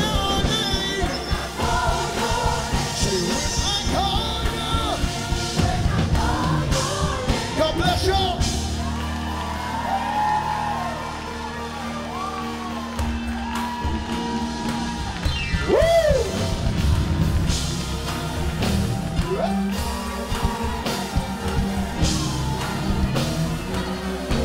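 Live gospel worship music: a band playing while voices sing and shout over it.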